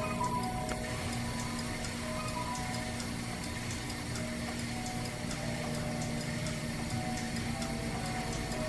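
Pipe organ driven by the artificial organs of a kinetic-art installation, sounding short, scattered notes at several pitches over a steady low held note, with no tune. A faint, regular ticking runs underneath.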